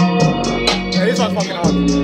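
A beat playing back over sustained tones, with a steady high tick about four times a second and a bending melodic line about a second in.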